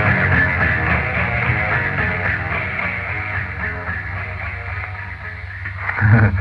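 Closing bars of a blues-rock song by a power trio of electric guitar, bass guitar and drums, dying away gradually over the last few seconds.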